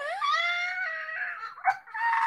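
A woman's high-pitched wordless vocalizing: one held note that steps up and down in pitch for about a second and a half, then a short break and a second high burst near the end.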